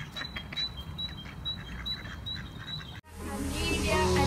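A bird repeats a short high note about three times a second over outdoor background noise. About three seconds in, this cuts off abruptly and background music begins.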